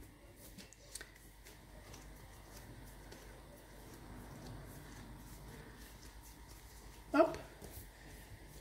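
Faint soft rubbing and light taps of hands rolling pieces of yeast bread dough into balls on a wooden table. A brief vocal sound comes about seven seconds in.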